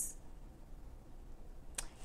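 Quiet room tone with one short, sharp click near the end.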